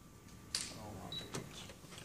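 Handheld portable TENS unit being adjusted: a sharp click about half a second in, then a short high beep and another click as its buttons are pressed.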